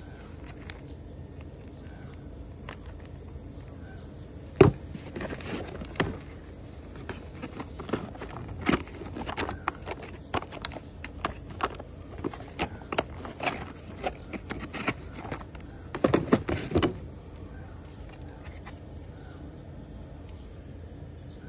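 Packaging being handled: crinkling plastic wrap and cardboard give an irregular run of crackles and clicks. It opens with one sharp knock about five seconds in and ends with a louder burst near the end.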